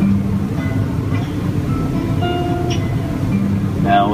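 A folk band playing a short instrumental passage between sung verses of a sea shanty, with held notes over a guitar. A steady low hum runs underneath.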